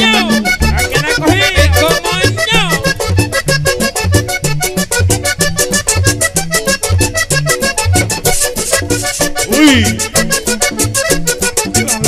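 Vallenato band playing an instrumental passage led by a diatonic button accordion over a steady bass line, with a metal guacharaca scraper keeping a fast, even scraping rhythm.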